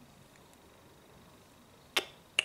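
Faint room tone, then near the end a single sharp metallic click as two small steel scalpel blades tap together.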